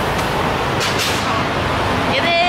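Road traffic on a busy street: a steady wash of cars and motorbikes passing close by.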